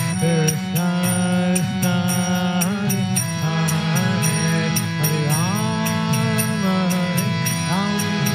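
Kirtan: a man sings a devotional chant into a microphone over the sustained, droning chords of a harmonium. A steady percussive beat keeps time at about three to four strokes a second.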